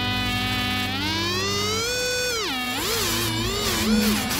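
Distorted electric guitar in a music soundtrack: one long sustained note glides up about an octave about a second in, then warbles up and down between the two pitches about twice a second.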